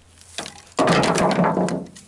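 Dry dead pecan branches crackling and snapping as they are handled: a single click, then about a second of dense crackle that stops shortly before speech resumes.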